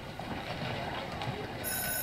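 Quiet, even background noise from the episode's soundtrack, with a brief high-pitched tone near the end.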